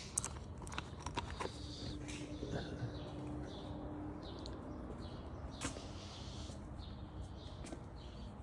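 Quiet workshop background with a few faint clicks near the start and another a little before the six-second mark, and a faint steady hum for a few seconds.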